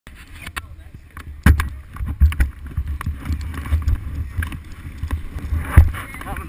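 Handling noise on an action camera's microphone: uneven low rumbling buffets with sharp knocks and clicks, the loudest about one and a half seconds in and again just before the end, as the camera is picked up and moved.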